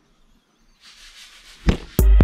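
A whooshing noise swells for about a second and ends in one sharp hit near the end: a transition sound effect leading into the channel's intro.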